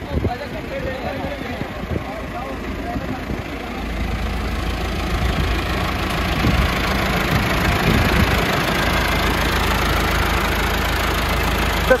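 Massey Ferguson 385 tractor's four-cylinder diesel engine running. Its sound grows louder and heavier about four seconds in and stays there. Faint voices are heard in the first few seconds.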